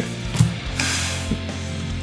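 Stiff trading cards flipped and slid against each other by hand: a sharp click about half a second in, a short papery swish near the middle and another click later, over steady background music.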